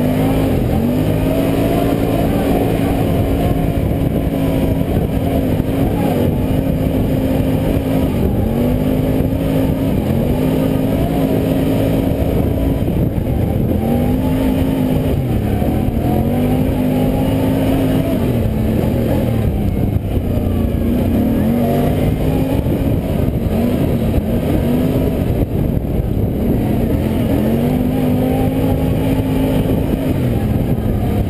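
ATV engine under way on a dirt trail, heard from a camera mounted on the quad itself. The revs rise, hold, and drop back every few seconds as the throttle is opened and closed.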